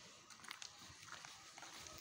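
Faint footsteps on a dirt road: a few soft, irregular scuffs and crunches over quiet outdoor background noise.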